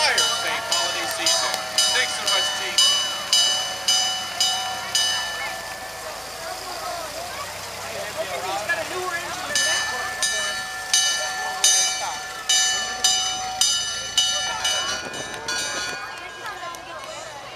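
A bell struck over and over in a fast, even rhythm, about two strikes a second, each strike ringing on at the same pitch. The ringing breaks off for a few seconds in the middle and then starts again, with crowd voices beneath it.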